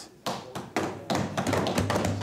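Many hands thumping on wooden desks in a rapid, uneven patter, starting about a quarter of a second in: parliamentary desk-thumping, the House's customary sign of approval for a speaker's point.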